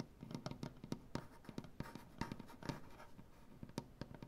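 Fingernails and fingertips tapping and scratching on a wooden tabletop: quick, irregular taps from both hands mixed with short scratching strokes.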